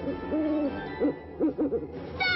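A cartoon owl hooting: one longer hoot, then a few short ones in quick succession.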